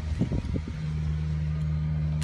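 Ford F-250 Super Duty truck's engine idling with a steady low hum. There are a few soft knocks and rustles from handling near the start.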